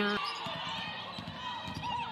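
Basketball bouncing on a hardwood court, with faint scattered knocks over a steady background of arena noise.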